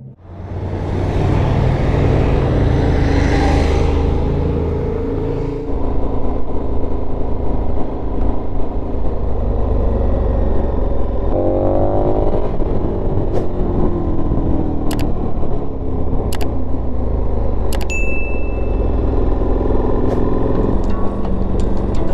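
KTM 1290 Super Adventure S V-twin engine running under way on the road, heard from the bike. About halfway through its pitch rises briefly and then falls away, and a few sharp clicks come in the second half.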